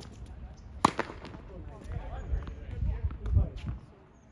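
A tennis ball struck sharply with a racket about a second in, the loudest sound, followed by softer ball bounces and low thuds of footfalls on the hard court.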